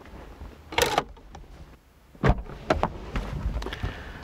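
Small car's door and cabin handling: a sharp click about a second in, a heavier clunk a little after two seconds, then a scatter of smaller knocks and rustles as a person climbs out of the car.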